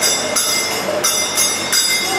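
Karatals (small brass hand cymbals) struck in a steady rhythm, about three strikes a second, each clash ringing on, with mridanga drum and harmonium beneath, in an instrumental gap between sung lines of a kirtan.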